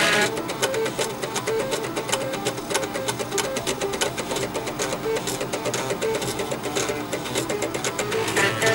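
Floppy disk drive head stepper motors playing a tune: buzzy, pitched notes over a rapid run of clicking steps.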